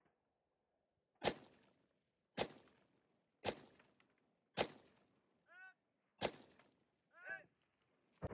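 Five single shots from a KP-15 AR-pattern rifle, fired at a steady pace about a second apart, with a slightly longer gap before the last.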